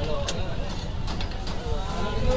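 Busy street-stall ambience: a steady low rumble of passing traffic under indistinct background voices, with a few sharp clinks as plates are handled.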